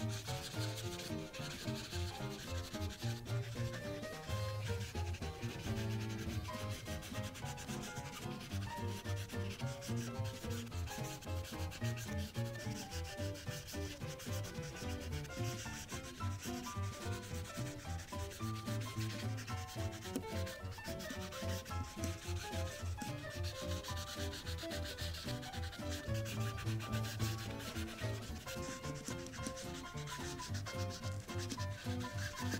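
Prismacolor marker tip rubbing back and forth on paper as an area is shaded in, a steady scratchy stroking. Background music with a regular beat runs underneath.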